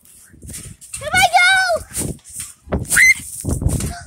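A child's high, wavering squeal-laugh about a second in, with another short cry near three seconds. Toward the end come loud low thumps and rumbling from bouncing on the trampoline while holding the phone.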